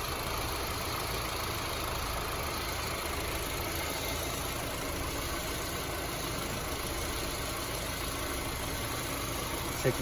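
A 2007 Honda Civic's 1.8-litre four-cylinder engine idling steadily, heard from the open engine bay.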